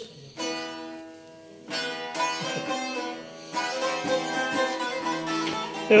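Bağlama, the Turkish long-necked lute, being played: plucked and strummed string notes ringing on, with fresh strokes about half a second, two and three and a half seconds in.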